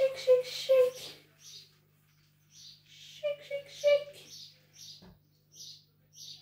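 Flour being sifted through a metal mesh sieve shaken over paper: a soft rhythmic rustling, about three shakes a second. Over it a woman chants a sing-song three-beat phrase twice.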